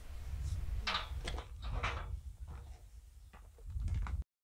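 A few faint knocks and clanks from a galvanised steel field gate being test-fitted on its hinge hooks, with wind noise on the microphone throughout.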